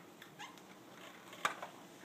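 Dry-erase marker squeaking in short strokes on a whiteboard, followed by a single sharp click about one and a half seconds in.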